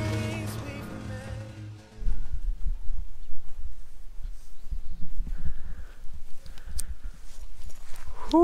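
Background music fading out over the first two seconds. Then an uneven low rumble with thumps as a handheld camera is carried outdoors, the microphone picking up handling noise and footsteps.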